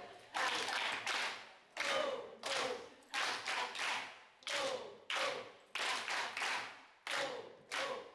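A roomful of people clapping in unison in a steady rhythm, roughly one and a half claps a second, with voices calling out together on the claps.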